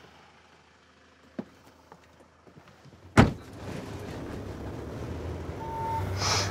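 Ambulance cab door slammed shut about three seconds in, after a few faint clicks. Then comes the steady noise of the vehicle's engine running, and a short beep near the end.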